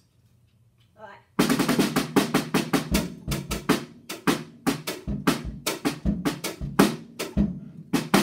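Natal drum kit played fast, starting suddenly about a second and a half in: a rapid run of snare and tom strokes, several a second, with occasional bass-drum kicks.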